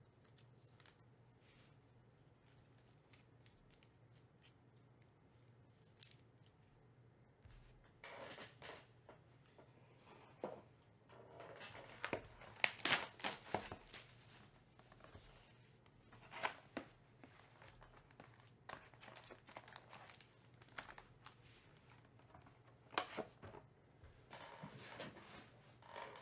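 Cardboard trading-card hobby box being torn open and its foil card packs handled. Faint at first, then from about a third of the way in come scattered sharp clicks, tearing and crinkling, busiest around the middle.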